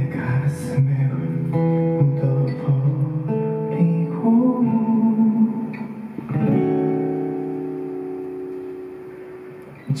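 Acoustic guitar playing a slow passage of picked notes and chords without voice. A chord struck about six seconds in is left to ring and fades away.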